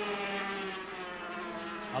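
Several 250cc two-stroke Grand Prix racing motorcycles running hard in a group: a steady, buzzing engine drone with several engine notes layered together.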